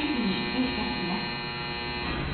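A JR West 683 series electric train's traction motors and inverter buzzing steadily as the train pulls slowly out of the station, with a woman's station announcement over it in the first second.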